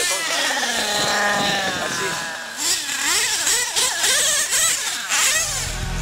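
Modified OS .28 two-stroke nitro engine in a radio-controlled drag car, its pitch falling over the first second, then revving up and down in short blips. Rock music comes in near the end.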